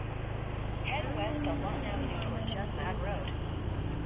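Motorcycle engine running with a low, steady hum as the bike pulls away, growing slightly louder as it gathers speed. Faint voices come through over it in the middle.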